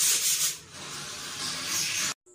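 Rustling, rubbing noise of a clear plastic bag of CBB61 fan capacitors being handled, in two loud surges: one at the start and one near the end.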